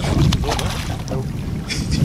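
Wind buffeting the microphone as a heavy low rumble, over choppy water against a small boat's hull.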